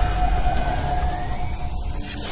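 Electronic intro sting for an animated logo: a deep bass bed under a held steady tone that fades out near the end, with a faint rising glide above it.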